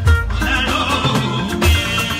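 Live Fuji band music: deep bass and drum beats under a high, wavering melody line that comes in about half a second in.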